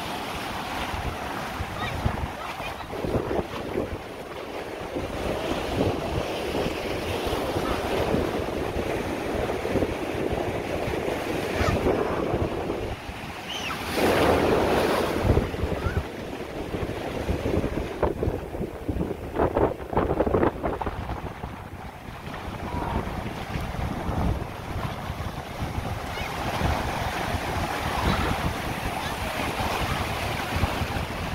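Ocean surf breaking and washing over the shallows, with wind buffeting the microphone; a louder rush of breaking water comes about halfway through.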